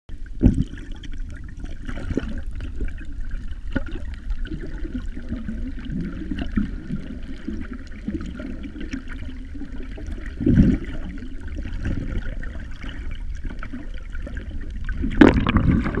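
Muffled water sound from a camera held underwater: steady sloshing and rushing water, with louder surges about half a second in, near the middle and shortly before the end.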